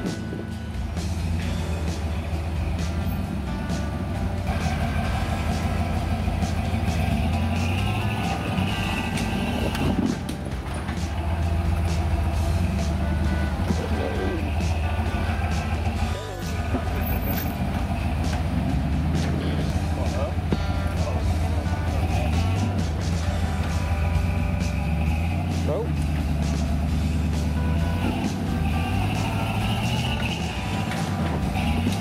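Modified early Ford Bronco's engine running at low revs as the truck crawls down a rocky ledge, with a couple of brief dips in the sound.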